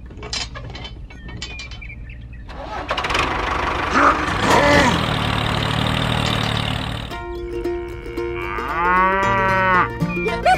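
A cow mooing once, a long arching call near the end. Before it, for a few seconds in the middle, there is a loud rushing, engine-like noise.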